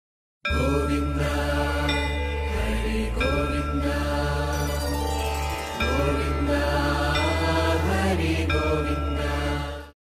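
Devotional music: a chanted mantra sung over a steady low drone. It starts about half a second in and fades out just before the end.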